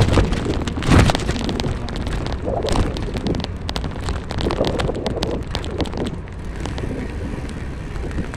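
Car cabin noise while driving: a steady low road and engine rumble with many short clicks and knocks, and a louder bump about a second in.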